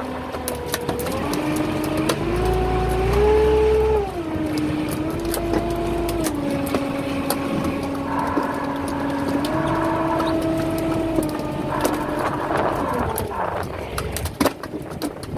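Electric fishing reel's motor whining as it hauls in line, its pitch stepping up and down as its speed changes, with small clicks throughout.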